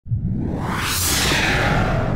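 Electronic whoosh sound effect over a low rumbling bed, starting suddenly, swelling to a bright peak about a second in and then sweeping down and fading, as in an animated video intro.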